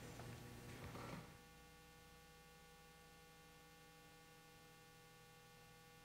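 Near silence: a faint, steady electrical hum, with a little faint noise in the first second or so.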